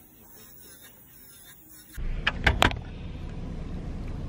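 Faint low sound for about two seconds, then the steady low rumble of a car's interior. Two or three sharp clicks follow shortly after the rumble starts.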